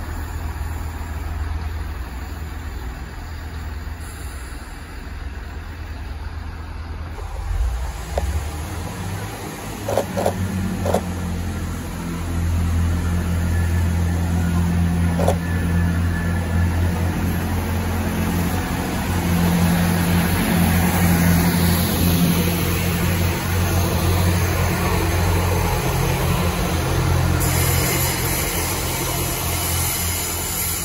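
GWR Turbo diesel multiple unit's underfloor diesel engines running, a low steady drone that grows louder about twelve seconds in as the train powers away from the platform. A few short high tones sound around ten to fifteen seconds in.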